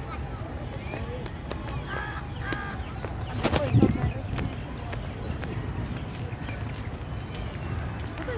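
People talking faintly in the background outdoors, over a steady low rumble on the microphone, with one brief louder low thump about three and a half seconds in.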